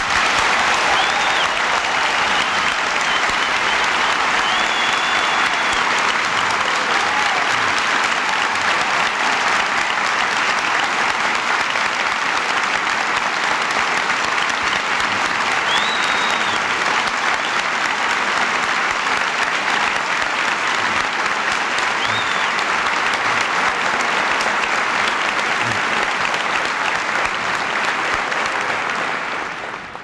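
A large audience applauding, a loud, steady clatter of many hands that starts at once after the speaker's line and holds for nearly half a minute before dying away near the end.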